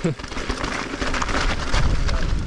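Mountain e-bike rolling down a rocky stone path: tyres crunching over stones and gravel, with a dense crackle of small knocks and rattles from the bike, over a low rumble of wind on the microphone.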